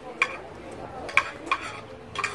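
Metal forks and spoons clinking and scraping against ceramic plates during a meal: three sharp clinks, one near the start and two close together about a second in.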